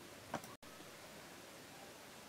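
Faint room tone with one short, soft click about a third of a second in; the sound drops out completely for an instant just after, at an edit.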